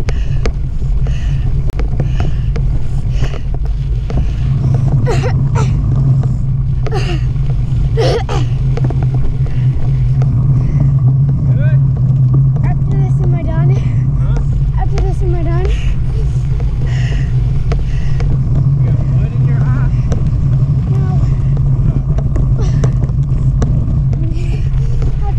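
Steady loud rumble of wind and vibration on a bike-mounted camera while riding over a bumpy dirt track, with sharp knocks from bumps a few seconds in and faint distant voices around the middle.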